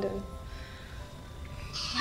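A woman's tearful, quavering voice trails off, leaving a soft sustained music underscore of long held tones. A short breathy hiss comes near the end.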